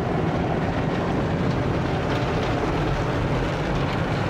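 Automatic car wash running over a car, heard from inside the cabin: rotating brushes and water spray on the glass and body make a steady, loud rumbling wash noise.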